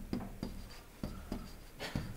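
Stylus writing on a digital screen: a series of faint taps and short scratches from the pen tip, several separate strokes over two seconds.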